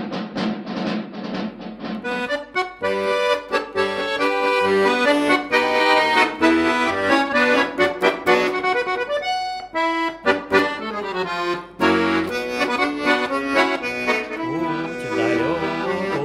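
Bugari button accordion (bayan) playing a march tune with melody over chords. A few drum strokes open it, and the accordion takes over about two seconds in.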